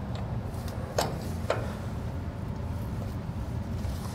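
A few light metal clicks and taps as a caliper bolt is slipped into a trailer disc brake caliper and started by hand; the sharpest click comes about a second in. A steady low hum runs underneath.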